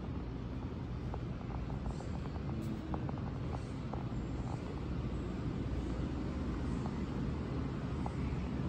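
Shop interior background: a steady low rumble with a few faint clicks in the first half.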